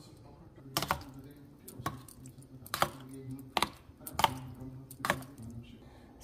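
Metal spoon clinking against a stainless steel bowl while stirring water into curd rice: about six sharp clicks, roughly one a second, over a faint steady low hum.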